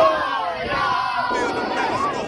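A group of young ballplayers shouting and cheering together, many high voices at once, loudest at the start.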